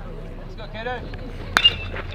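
Metal baseball bat hitting a pitched ball about one and a half seconds in: a sharp ping with a brief ringing tone. Spectators call out in the background.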